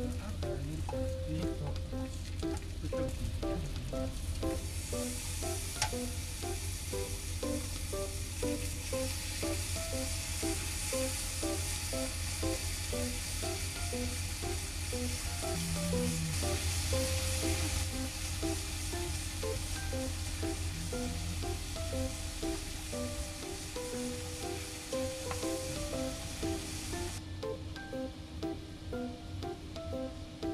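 Meat sizzling on a tabletop yakiniku grill plate, a steady hiss that fades away near the end, under background music with a simple melody.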